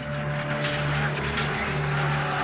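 Documentary background score: a low sustained drone carrying on from under the narration, with a dense rushing noise layered over it.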